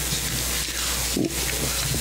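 Steady hiss with a low electrical hum from the meeting's open microphones and sound system, no one speaking into them.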